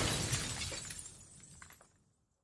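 The fading tail of a crash-like noisy sound effect at the end of a rap track, dying away to silence within about two seconds, with a few faint clicks near the end.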